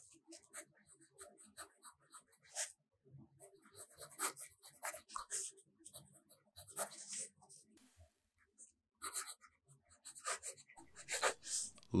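Fountain pen nib writing cursive on steno notebook paper: faint, irregular short scratches as the letters are formed, with brief pauses between words.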